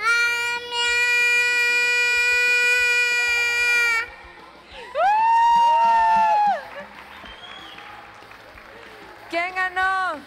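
A child's voice holding one long, steady 'miau' for about four seconds, an attempt to keep the meow going as long as possible in one breath. About a second later comes a shorter, higher voiced call that rises, holds and falls.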